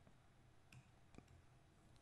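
Near silence: quiet room tone with two faint clicks, one a little before the middle and one just after it.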